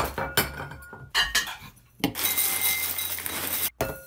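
Dry cereal flakes pouring and spilling, clinking and rattling against a ceramic bowl and a wooden tabletop. A run of sharp clicks comes first, then a short pause, then a steady rattle that stops abruptly near the end.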